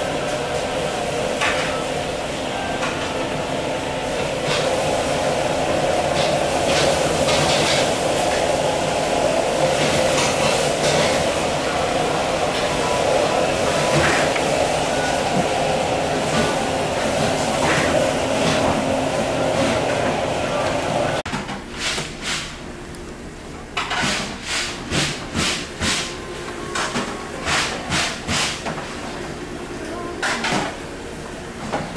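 A steady background din runs for about the first twenty seconds and then drops away. After that, a kitchen knife knocks sharply on a wooden cutting board about twice a second as mahi-mahi is sliced into sashimi.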